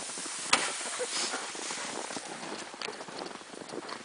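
Footsteps crunching in snow, irregular and uneven, over a steady hiss, with one sharp knock about half a second in.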